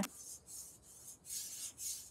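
A katana blade being sharpened on a whetstone: a series of short, faint, hissing strokes of steel against stone.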